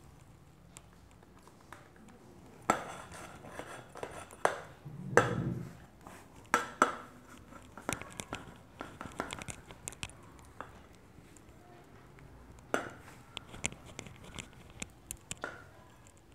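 A metal pipe used as a rolling pin is rolled over clay on a wooden tabletop, knocking and clinking irregularly against the wood. The knocking starts about three seconds in, with one duller, heavier thump about five seconds in.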